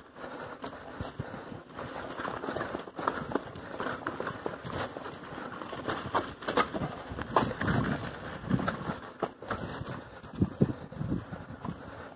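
Lowered bicycle ridden over a rough, rooty dirt trail: a steady run of irregular rattles and clicks from the bike, with heavier knocks now and then as the low-slung frame strikes the ground, stronger around the middle and near the end.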